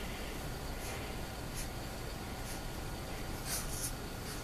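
A sheepadoodle puppy nosing and stepping about in fresh snow: a few faint, short scuffing sounds about a second apart, and a slightly longer one near the end, over a steady background noise.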